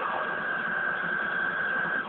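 A steady, noisy rushing blast, an anime attack sound effect played through a TV speaker and picked up by a phone, with a steady high whine over it that cuts off suddenly at the end.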